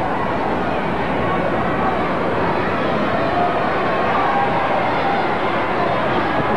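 Arena crowd shouting and cheering, a steady loud din of many voices.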